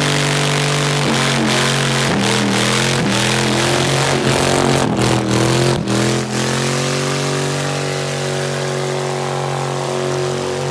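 Dodge Dakota pickup's engine held at high revs during a burnout, rear tyres spinning and smoking. Several times in the first six seconds the revs dip sharply and climb back; after that the engine holds a steady, high note.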